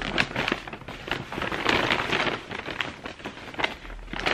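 Brown paper shopping bag rustling and crinkling as a garment is pulled out of it, in irregular crackly bursts.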